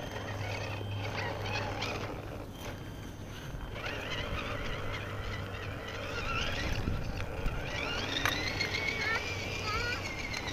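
Tamiya CR-01 RC rock crawler driving: its small electric motor and gearbox whine over a rough crunch from the tyres. About eight seconds in, the whine rises sharply as the truck speeds up, then holds, wavering.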